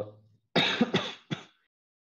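A man clearing his throat with three short, rough coughs in quick succession, about half a second to a second and a half in.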